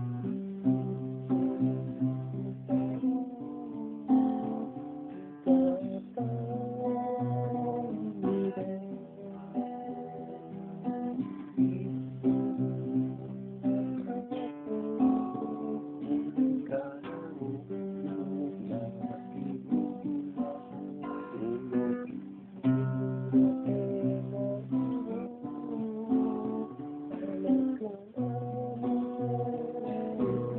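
Guitar music: chords strummed in a steady rhythm with held, ringing notes, recorded on a mobile phone so the top end is cut off.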